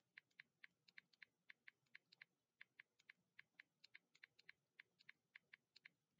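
Faint typing on a computer keyboard: quick, irregular key clicks, about four a second.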